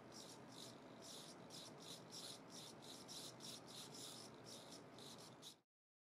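Faint, evenly repeated whirring strokes, about three a second, from the two small hobby servos of a wrist-worn tactile dragger driving its contact tip in a tapping sequence across the wrist. The sound cuts off abruptly shortly before the end.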